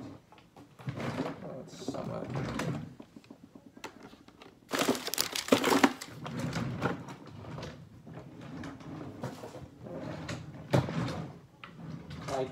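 Rummaging through things by hand: rustling, knocks and clicks of objects being moved, with a loud rustling burst about five seconds in and a sharp knock near the end.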